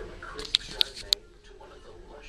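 Three sharp, light clicks about a quarter of a second apart, like clothes hangers knocking on a metal rack as garments are pushed along it.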